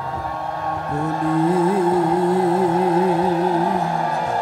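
Bengali devotional kirtan: a male voice holds one long wavering note, starting about a second in, over a steady harmonium drone.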